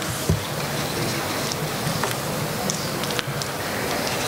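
Audience applauding steadily, a dense even patter of many hands clapping.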